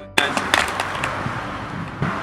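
A child on inline skates falling onto an asphalt path: a sharp knock about a fifth of a second in, then a few more knocks and scrapes of skates and knee pads on the pavement over the next second, over the gritty rolling noise of skate wheels.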